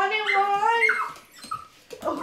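Small dog whining, one long high wavering whine that stops about a second in, excited by a new kitten held up out of its reach.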